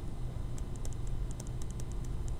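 Stylus tapping and sliding on a tablet screen during handwriting: a scatter of small, irregular clicks over a steady low hum.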